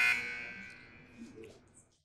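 Electronic buzzer tone cutting off just after the start, then ringing out and fading over about a second and a half, marking the end of a debater's turn. A faint bump or two follows near the end.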